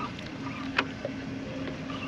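A boat's motor running with a steady low hum over water and wind noise, with one sharp click a little before halfway through.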